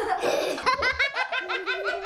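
A person laughing in a quick run of short, high-pitched bursts, several a second, starting about half a second in.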